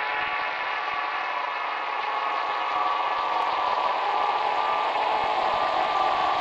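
Intro sound effect: a steady, dense mechanical hum with several high held tones.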